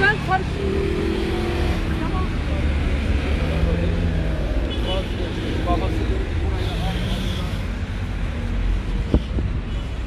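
Steady rumble of city road traffic, with faint indistinct voices and a single sharp click near the end.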